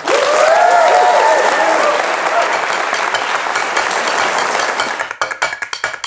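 Audience applauding, with whooping cheers over the first two seconds and the clapping slowly thinning. About five seconds in, the applause gives way to percussive music, a quick run of sharp beats.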